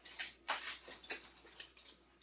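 Quick irregular run of small clicks and rustles as a sunflower bouquet is handled and adjusted in its vase.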